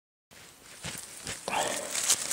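Silent at first, then rustling and sharp clicks of blackcurrant stems being handled and cut during pruning, with a short vocal sound about a second and a half in.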